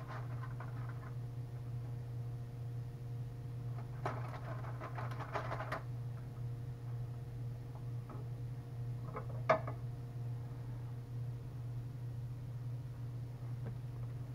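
Aluminium foil crinkling and a utensil scraping as baked fish is lifted out of its foil packet, a burst of a couple of seconds about four seconds in, with a single sharp clink of metal on the plate near the middle, over a low steady hum.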